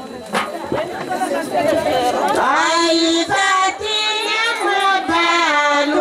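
Women's choir singing a tari song together in long, held lines, with a few frame-drum strokes. The first couple of seconds are a rougher break with mixed voices before the sung line resumes about two and a half seconds in.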